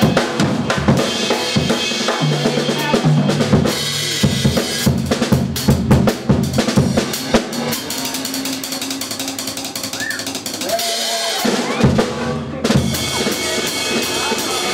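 Jazz drum kit played with sticks in a busy solo passage: rapid snare, tom and bass drum strokes under a wash of cymbals, which stop briefly near the end.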